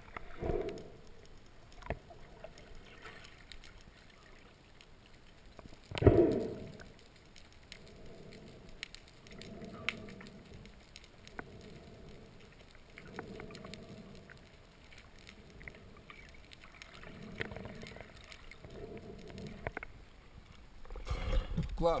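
Muffled underwater sound through a submerged camera housing: a low murmur of water with soft swells about every second and a half, a single loud thump about six seconds in, and a few faint clicks. Splashing as the camera breaks the surface near the end.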